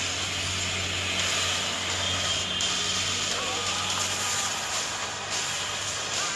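Film trailer soundtrack: a steady rushing rumble of sound effects, with faint music underneath.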